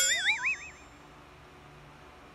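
A comic cartoon 'boing' sound effect: a short springy, wobbling tone with a rising pitch. It starts suddenly and dies away within about a second.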